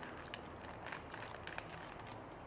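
Small plastic packet crinkling and clicking faintly as it is turned in the hands, a few scattered light crackles, over a steady low hum from room fans.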